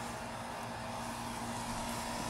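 A steady mechanical hum with a faint held tone, unchanging in level.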